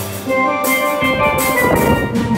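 Steel drums (steelpans) playing a melody of ringing pitched notes over a steady drum beat.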